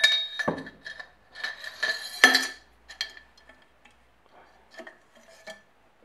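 Motorcycle front fork tube and its internal parts clinking and knocking against metal as the tube is handled on a steel workbench, with a thin metallic ring after the knocks. The loudest knock comes about two seconds in; a few lighter clinks follow near the end.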